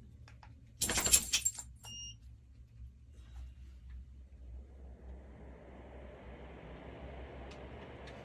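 A brief loud clatter about a second in, then a short high two-tone beep from the ceiling fan's remote receiver. From about five seconds the Orison low-profile enclosed-blade ceiling fan spins up, and its steady rush of air builds and holds.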